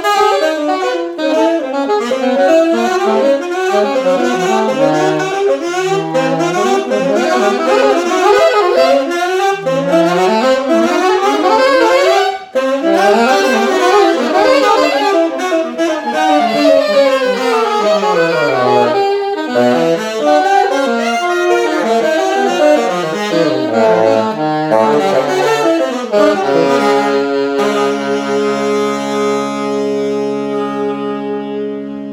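Tenor and alto saxophones improvising a duet, fast interweaving lines with a brief break about twelve seconds in and a long falling run a few seconds later. Near the end the playing settles into long held notes.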